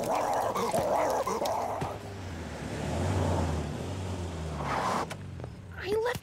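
A cartoon dog snarling and growling for about the first two seconds, then a low rumble that dies away about five seconds in.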